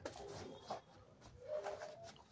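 Faint, low pigeon cooing in a few short hoots, one near the start and a longer one about one and a half seconds in.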